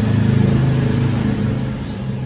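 A motor vehicle's engine running close by, a low steady hum that swells within the first half second and then fades.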